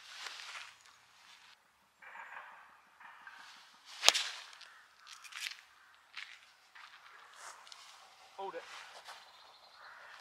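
A golf club strikes a ball off a tee: a single sharp crack about four seconds in.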